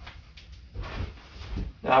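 A person shifting and turning around on a wooden stool: soft knocks and rustling of the stool and clothing, ending with a man's spoken "now".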